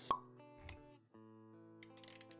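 Motion-graphics intro sound effects over soft background music: a sharp pop just after the start, a softer low thud soon after, then the music drops out for a moment and comes back as steady held notes.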